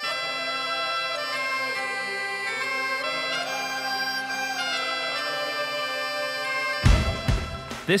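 Great Highland bagpipes playing a tune: the chanter's melody moves up and down over the steady drones. About seven seconds in, a sudden loud burst of noise breaks in and the piping stops.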